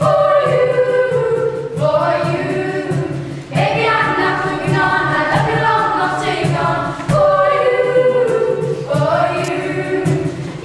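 A children's vocal group singing together in parts, unaccompanied, with light clicks keeping a steady beat under the voices.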